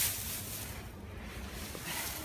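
Straw rustling in a lambing pen, the rustle fading about a second in, over a low rumble of wind on the microphone.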